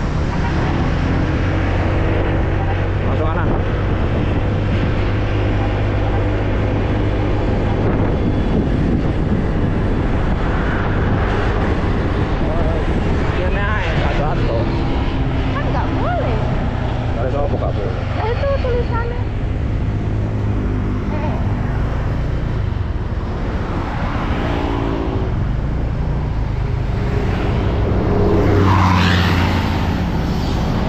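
Motorcycle engine running steadily while riding along at speed, with wind and road noise on the microphone; the sound swells louder briefly near the end.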